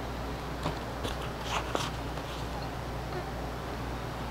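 A few faint, short clicks and crackles from an unlit cigar being handled close to the microphone, over a steady low room hum.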